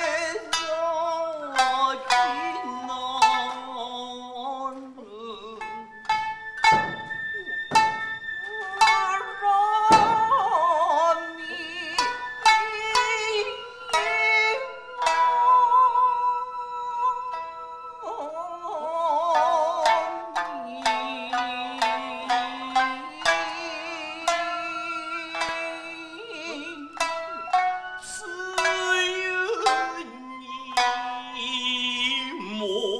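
Kiyomoto music: a shamisen plucking sharp, separate notes under a long, wavering sung narrative line. A few low thuds sound near the middle.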